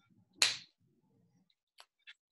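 A plastic water bottle set down on a hard surface: one sharp, short hit about half a second in, then a faint click near the end.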